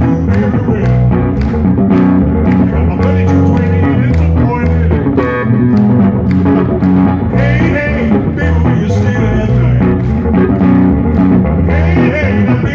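Solo electric bass guitar played fingerstyle through an amplifier, a driving line of low plucked notes, with a man singing over it in short phrases.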